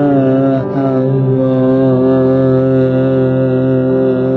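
Music: a singing voice holding long, wavering notes over sustained accompaniment, stepping down to a lower note just under a second in.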